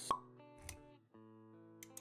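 Intro music of held notes with animation sound effects over it: a sharp pop just after the start, the loudest thing here, a short low thud a little later, and a few light clicks near the end.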